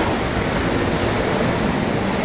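A steady, loud rushing noise with no clear pitch or rhythm.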